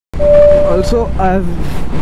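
Honda H'ness CB350's single-cylinder engine running while riding on the highway, heard from the rider's helmet as a steady low rumble mixed with wind noise. It cuts in suddenly just after the start.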